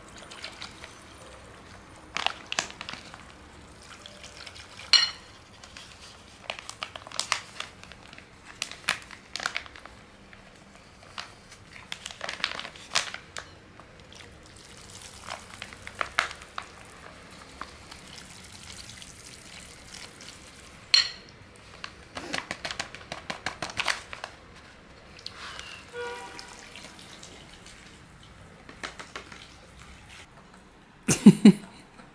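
A wire whisk clinking and scraping against a glass bowl as powdered moulding gel is poured in and whisked into water. The clinks come at an irregular pace, the sharpest about five seconds in and about twenty-one seconds in.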